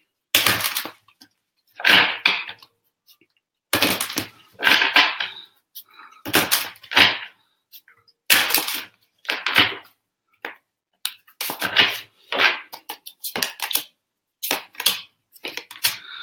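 Archangel Power Tarot cards being shuffled by hand: an irregular run of short shuffles, each under a second, with brief pauses between them.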